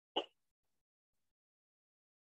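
A single brief click shortly after the start, then silence.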